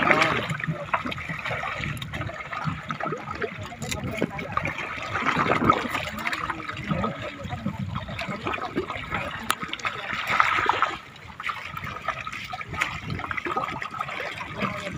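Seawater sloshing and splashing around a bamboo raft as a fishing net is hauled in by hand and worked in the water, with people's voices talking now and then.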